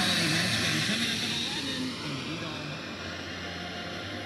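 Eton Elite Field portable radio tuned to 107.5 FM (KGLK, Lake Jackson, Texas), pulling in a weak long-distance tropospheric signal: a steady static hiss with a faint voice buried in it. It gets a little fainter about halfway through.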